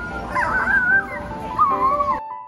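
Background music with steady held notes, under a high whining cry that rises and falls twice.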